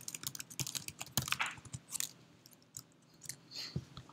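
Computer keyboard typing: a quick run of keystrokes in the first two seconds, then a few scattered key presses.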